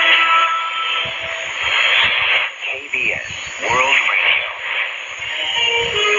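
Shortwave AM broadcast received on an Icom IC-R75 receiver: music with a voice passage about halfway through, narrow and band-limited, with faint steady hiss above it.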